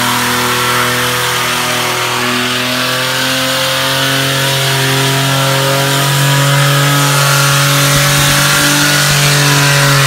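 Holden Commodore's engine held at high revs during a burnout, over the hiss of the spinning rear tyres. The engine note is steady, stepping up slightly in pitch and loudness about six seconds in.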